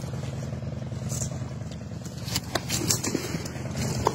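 A steady low engine-like hum with a few faint clicks over it.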